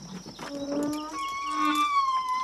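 Drawn-out animal cries begin about half a second in, with several long, steady tones at different pitches overlapping.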